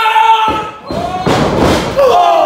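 A wrestler's loud drawn-out yell, then a heavy thud and rough scuffling noise in the wrestling ring about a second in as bodies hit the ring.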